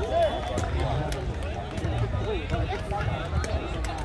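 Crowd chatter: many people talking at once around an outdoor game, no single voice standing out, over a steady low rumble.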